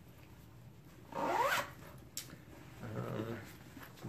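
A zipper on a leather tote bag pulled once, about a second in, its rasp rising in pitch. A light click follows.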